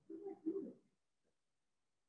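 A person's voice, quiet and low-pitched: two short hummed or murmured syllables within the first second, like an "mm-hmm".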